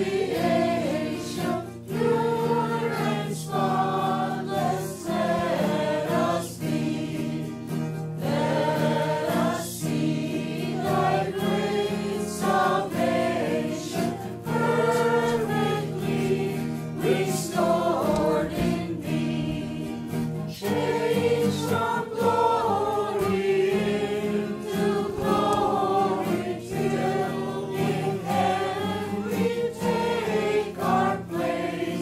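A choir singing Christian devotional music, melodic lines over sustained low notes.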